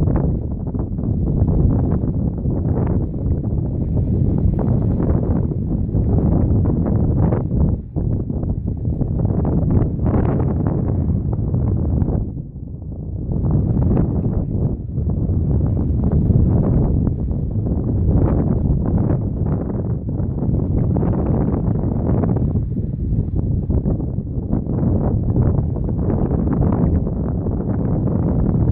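Strong wind buffeting the microphone: a loud, heavy low rumble that comes and goes in gusts, easing briefly about twelve seconds in.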